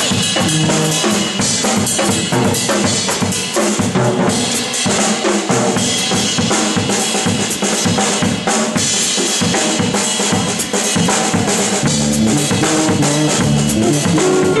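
Live drum kit played hard and busily, with snare, bass drum, toms and cymbal wash, the rest of the band largely dropping out for a drum break. The bass and band come back in near the end.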